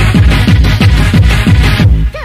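Old-skool hardcore dance music from a DJ set: a fast, heavy kick drum about four beats a second under dense synth sound. The music drops out briefly just before the end.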